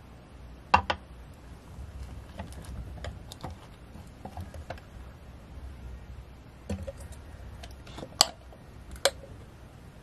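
Scattered clicks, clinks and knocks of a glass jar, a metal spoon and a stainless steel mixing bowl being handled and set down on a kitchen scale. The sharpest knock comes a little past eight seconds in.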